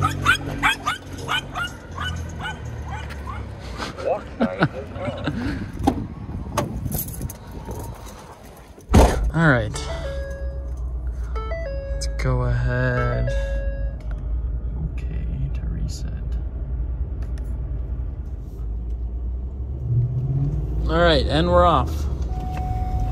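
Street noise with voices, then, after a sudden change about nine seconds in, the steady low drone of a Ford F-150 pickup's engine heard inside the cab, with a few short electronic tones.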